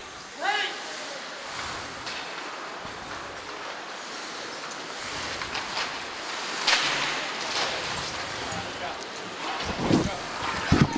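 Ice hockey in play in an indoor rink: a steady hiss of skates on the ice and rink noise, broken by a couple of sharp stick-and-puck cracks about two thirds of the way in. A short shout rises near the start.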